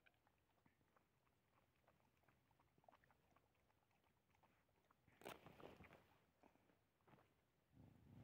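Dogs chewing and crunching food, faint, with small scattered clicks and a louder spell of crunching about five seconds in.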